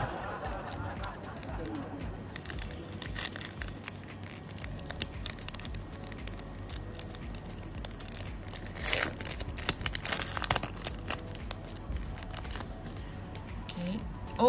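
Foil trading-card pack wrapper crinkling as it is handled, then torn open in a dense burst of tearing and crackling about nine seconds in, with more scattered crinkling after.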